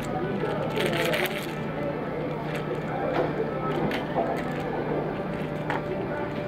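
Restaurant room noise: indistinct chatter from other diners over a steady low hum, with a short burst of clicking about a second in.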